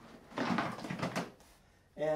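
A hard-cased AreaRAE gas monitor being pulled out of its Pelican case and lifted: about a second of scraping and rustling with a few sharp knocks, starting about a third of a second in.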